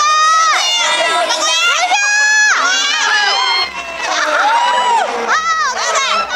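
Young audience shouting and cheering, many high-pitched voices overlapping in drawn-out rising and falling cries, with a short lull a little past halfway.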